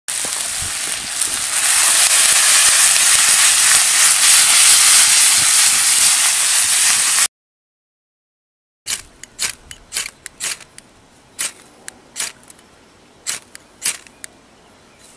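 Köfte and tomatoes sizzling loudly in a frying pan over a wood fire for about seven seconds, cutting off suddenly. About nine seconds in, after a short silence, comes a quick series of about ten sharp scrapes: a striker dragged down a ferrocerium rod, throwing sparks onto a dry-grass tinder bundle.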